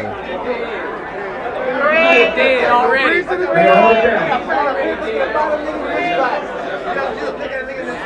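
Several men's voices chattering and calling out over one another, with no clear words.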